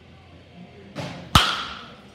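Baseball bat striking a pitched ball: one sharp, loud crack with a short ringing tail, just after a brief softer noise about a second in.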